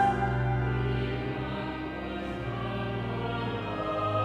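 Cathedral choir of boy choristers and adult singers singing in a choral service, with long held notes over a steady low note.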